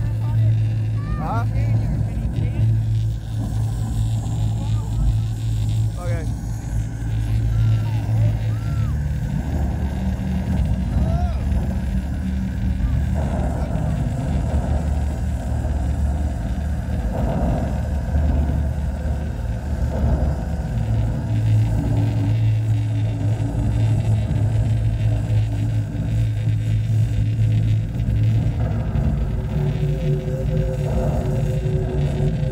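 Show soundtrack played over loudspeakers: a deep, steady drone that changes chord every few seconds, with a few short high gliding tones in the first several seconds and crowd voices around.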